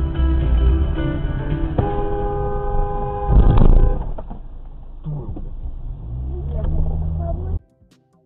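Car engine and road noise heard from inside a moving car, with music playing over it. A loud rush of noise comes about three and a half seconds in, the engine rises in pitch as the car accelerates near the end, and the sound cuts off suddenly shortly before the end.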